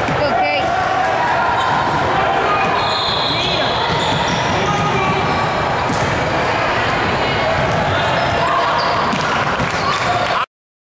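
Basketball bouncing on a hardwood gymnasium floor, amid steady chatter from players and spectators echoing in the gym.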